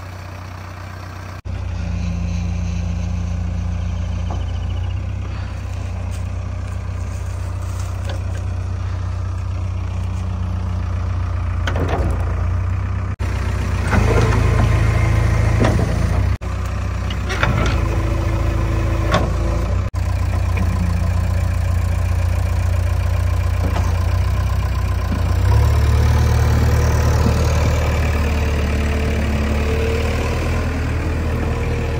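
JCB 3DX backhoe loader's diesel engine running with a steady low drone. About halfway through there are several short scraping, clattering noises as the loader bucket works the ground and drops soil, and near the end the engine note rises and grows louder as it takes more throttle.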